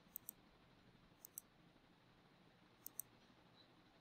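Three pairs of short, faint clicks over near silence, each pair a quick double click, the pairs coming a little over a second apart: a computer mouse being clicked.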